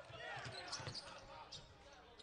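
Basketball dribbled on a hardwood court, several separate bounces, with faint squeaks and distant voices from the court.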